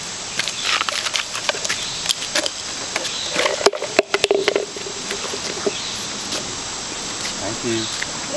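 Sharp plastic clicks and rattles from small plastic toy buckets handled by children, one bucket's handle having come off. Short bits of child vocalising come in around the middle and near the end, over a steady drone of insects.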